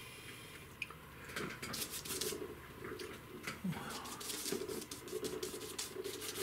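A bristle brush mixing oil paint on a cardboard palette, then stroking it onto the painting: a string of short, soft brushing strokes.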